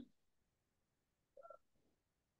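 Near silence, broken by one brief, faint electronic beep about one and a half seconds in.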